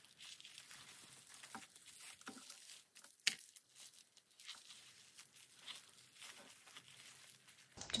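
Plastic bubble wrap crinkling and rustling faintly as it is folded around a small object by hand, with one sharper click a little over three seconds in.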